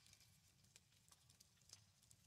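Near silence with a few faint, sharp taps and clicks of tarot cards being handled and set down on a table.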